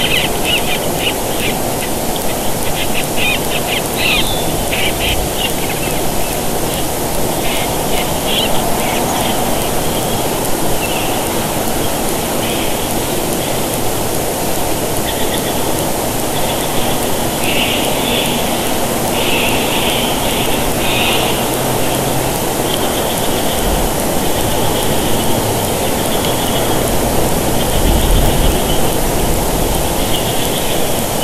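Steady outdoor hiss from a nest-cam microphone, with intermittent high-pitched chirps and trills in short runs, busiest in the first few seconds and again past the middle.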